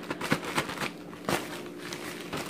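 Padded paper mailers being handled and torn open by hand: paper rustling and crinkling, with a few sharp crackles.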